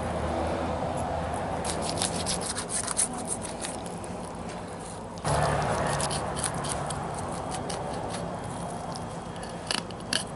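Fillet knife cutting through a freshwater drum, the blade scraping and ticking in clusters as it runs along the backbone, rib bones and scales, over a steady low background hum.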